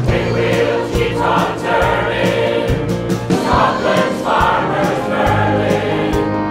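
A choir of men and women singing a pop-style song about dairy over a backing track with a steady beat.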